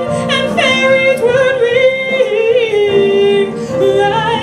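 A woman singing solo into a microphone, a slow melody with wavering, vibrato-laden held notes, including one long steady note shortly before three seconds in.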